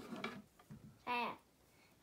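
A young girl's voice saying one drawn-out "I" about a second in; otherwise fairly quiet.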